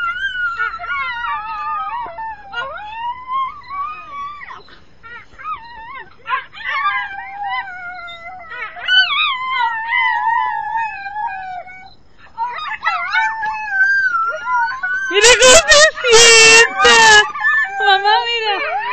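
A pet dog howling along with people imitating howls: long drawn-out howls that glide and slowly fall in pitch, often two voices overlapping. Near the end come a few loud, close bursts of howling.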